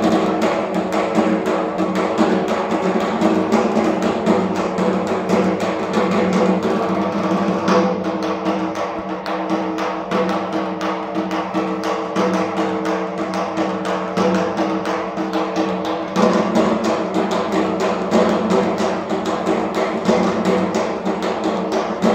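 Dhak, the large Bengali barrel drums, beaten with sticks in a fast, continuous rhythm over a steady drone.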